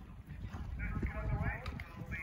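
A horse cantering on grass, its hoofbeats coming as uneven low thuds, with faint voices of people in the background.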